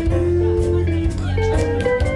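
A live jazz band playing an instrumental passage with no vocal: a melodic solo line of held, stepping notes over a steady bass and regular cymbal strokes.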